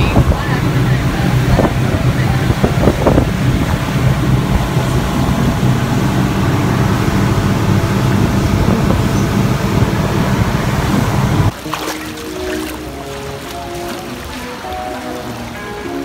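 Passenger fast boat's engines running steadily, heard from inside the cabin as a loud low hum with the rush of water and wind. The engine sound cuts off suddenly about eleven seconds in and background music takes over.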